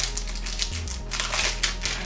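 A paper sticker sheet crinkling and rustling as it is handled, with a run of quick crackles, thickest about a second and a half in.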